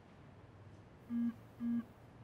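Two short, identical electronic beeps from a smartphone, about half a second apart: the error alert of a chat message that failed to send.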